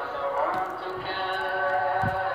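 Music with a sung voice holding long notes, one note gliding about half a second in.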